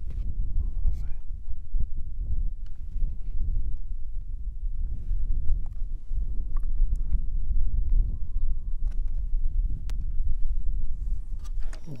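Wind buffeting the microphone: an uneven low rumble that rises and falls in gusts, with a few faint clicks.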